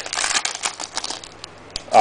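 Trading cards and a foil pack wrapper being handled: a quick run of crinkles and card clicks in the first second, then quieter, with a short laugh at the very end.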